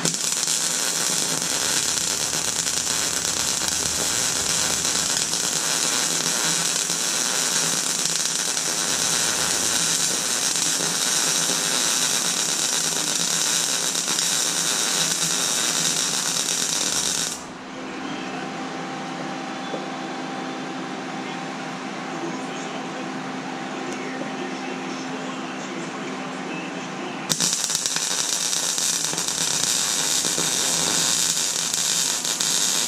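Electric arc welding on a steel frame: the steady crackling hiss of the arc runs for about seventeen seconds, stops for about ten seconds, leaving a quieter low hum, then the arc strikes again abruptly near the end.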